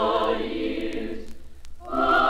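Women's choir singing a Christmas carol, played from a 1951 mono vinyl LP: a sung phrase dies away about a second in, a brief pause, then the next phrase comes in at full voice near the end. Faint surface clicks from the record run underneath.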